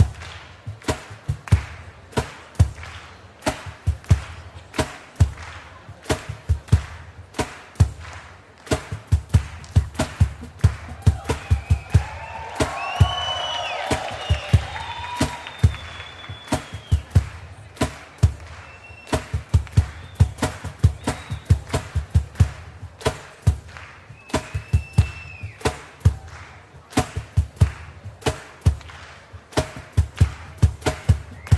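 Drum kit played live in an irregular, free-flowing pattern of sharp strikes with heavy kick-drum and tom thumps. About halfway through, audience whistles and cheers rise over the drums for a few seconds, with another brief whistle later.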